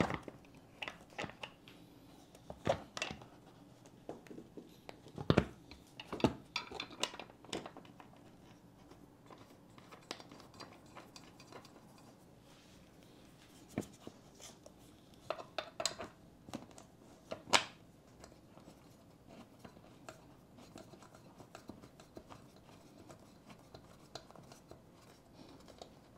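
Scattered clicks, knocks and light rattles of office chair parts being handled and fitted together by hand during assembly, a handful of sharper knocks among them.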